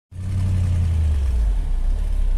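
Engine of a 1965 Chevrolet dually pickup running as the truck drives along a muddy dirt trail, heard from inside the cab: a deep, steady drone whose pitch drops slightly about a second and a half in.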